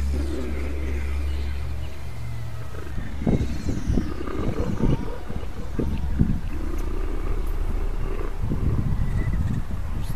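A low, rough growling sound, like an animal roar, that starts about three seconds in and carries on in uneven bursts, over a steady low hum.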